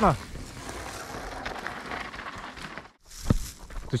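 Downhill mountain bike passing over a dry, dusty dirt trail: a steady noise of tyres on loose soil for about three seconds, then a sudden cut and a single thump.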